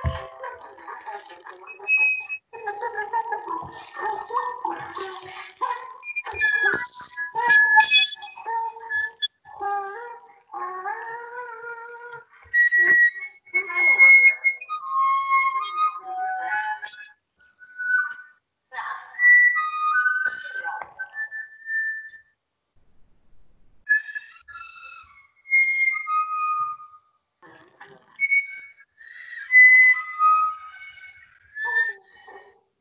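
Sopranino flute playing short, scattered notes that leap widely in pitch, broken by pauses, in a sparse contemporary solo line. The sound comes through an online video call.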